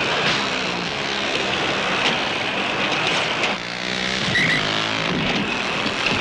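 Motorcycle engines running under a loud, dense wash of action noise, with their pitch shifting and a few sharp knocks as players clash on the track.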